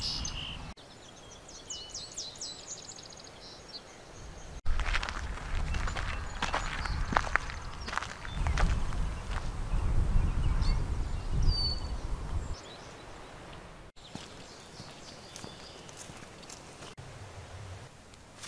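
Outdoor trail sound in several short cuts. Birds chirp in rapid high trills in the first few seconds. Then, for most of the middle, footsteps and rustling are heard over a louder low rumble. Near the end it turns quieter, with a few faint bird calls.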